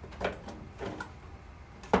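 An acrylic scissor display stand being handled in its cardboard sleeve: a few light knocks and scrapes, then one sharp clack near the end as the stand is set down on the table.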